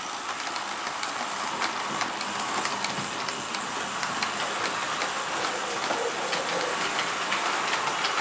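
TT-scale (1:120) model train of tank wagons rolling along the layout's track: a steady rolling rush of small metal wheels on rail, with faint light clicks running through it.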